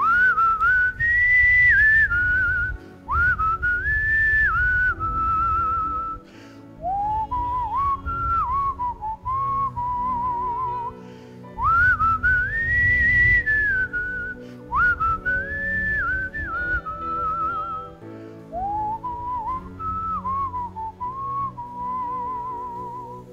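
A man whistling a slow melody close into a microphone, in six phrases of about three seconds: two higher phrases and then a lower one, twice over. Each phrase glides up onto its held notes and ends on a wavering note, with breath rumble in the mic under each phrase and faint soft music beneath.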